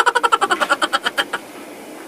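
Rapid ticking from a spin-the-wheel randomizer on a phone, about a dozen sharp ticks a second, fading out and stopping about a second and a half in as the wheel settles on a pick.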